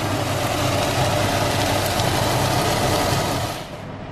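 Three eggs frying in a pan, sizzling steadily, over a steady low hum. The sound cuts off suddenly near the end.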